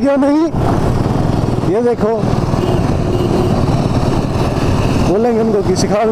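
Royal Enfield Bullet 350 single-cylinder engine running at road speed, with heavy wind rush over the mic of the rider's own bike.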